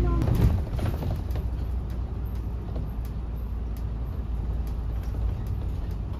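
Inside a moving bus: a steady low rumble of the engine and road, with scattered light clicks from the cabin.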